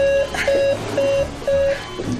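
Four short electronic beeps of one steady mid pitch, evenly spaced at two a second, from a hospital patient monitor.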